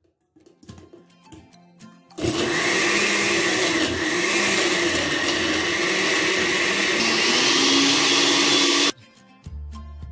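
Countertop blender with a glass jar switched on about two seconds in, running loud and steady as it purées roasted tomatoes, onion, garlic and water, then cut off abruptly near the end. Its pitch rises slightly in the last couple of seconds.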